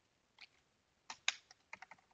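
Computer keyboard keystrokes, faint: a single tap about half a second in, then a quick run of about six keys near the end.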